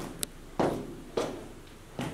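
Footsteps of a person walking down a staircase, evenly paced at a little under two steps a second.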